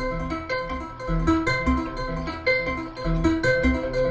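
Modular synthesizer playing a repeating pattern of short notes that step up and down a major triad, with pitches quantized by a Synthesizers.com Q171 quantizer bank from a triangle LFO. The note timing comes from a faster second oscillator hard-synced to the main one.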